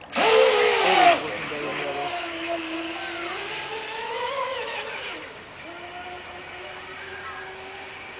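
Radio-controlled fast electric catamaran racing boat at full speed: a loud rush for about the first second, then the motor and propeller whine rising and falling in pitch with the throttle, growing fainter after about five seconds as the boat runs farther off.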